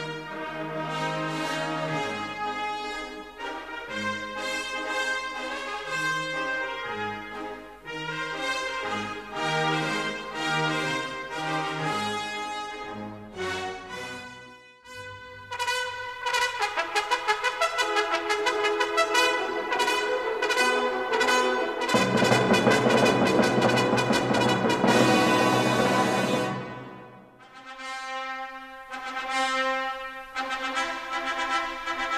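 Trumpet playing a recorded musical example with accompaniment. Melodic phrases run over low bass notes, with a short break about halfway. After the break come fast repeated notes that build to a louder, fuller passage, which falls away briefly near the end before the music resumes.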